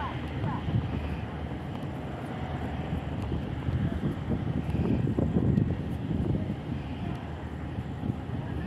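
Crawler crane's diesel engine running steadily as it lowers a precast concrete bridge girder, the rumble growing louder in the middle.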